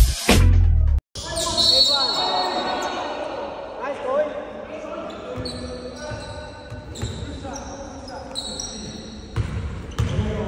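A loud intro music sting cuts off about a second in. Then comes the echoing sound of a basketball game in a gym: players' voices, a ball bouncing on the hardwood court, and short high squeaks of sneakers on the floor.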